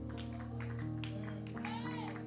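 Soft background music of sustained chords that change a few times, with a brief wavering, voice-like glide near the end.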